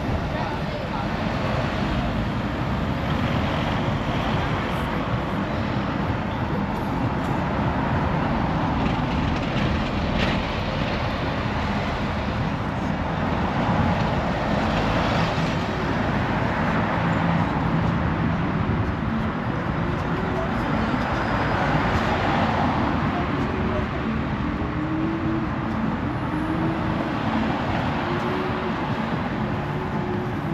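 Road traffic passing steadily: cars and a double-decker bus driving by close at hand.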